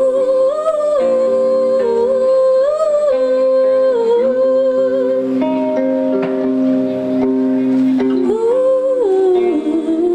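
A woman's wordless vocal, held notes that glide up and down, over sustained keyboard chords that change every few seconds, as a live song's intro.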